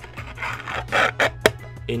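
A 3D-printed plastic drawer rubbing and scraping as it is pushed into a tight-fitting cubby, ending in a sharp click about one and a half seconds in. Background music plays underneath.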